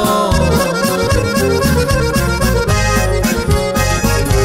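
Norteño corrido music: an instrumental passage led by the button accordion, over bass and a steady drum beat, with no singing.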